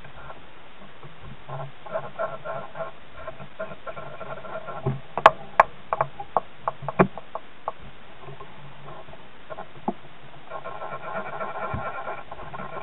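Handling noise at a fly-tying vise: a run of about eight sharp clicks and taps over two and a half seconds, the loudest about five seconds in.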